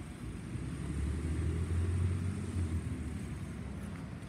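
Mack LEU rear-loader garbage truck's engine rumbling low, growing louder about a second in and easing off near the end as the truck pulls away along the street.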